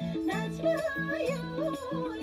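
Sambalpuri folk dance music: a wavering, singing-like melody bends up and down over a repeating low two-note pattern that keeps an even beat.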